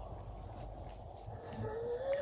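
Faint rustle of cotton yarn drawn over a plastic crochet hook as half double crochet stitches are worked. Near the end a person's short hummed tone, rising slightly, sets in.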